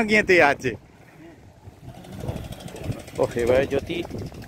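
Men talking in Bengali: one short word, a quiet lull of about a second, then voices again over low outdoor background noise.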